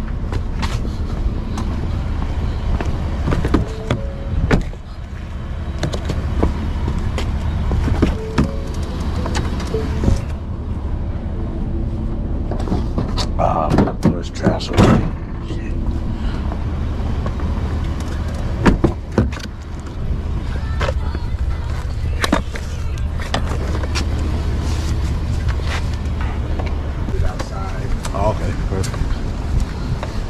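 Pickup truck running with a steady low rumble, with several short clunks and knocks from its door and handling.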